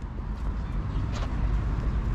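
Steady low rumble of motor vehicles, with a faint short tick about a second in.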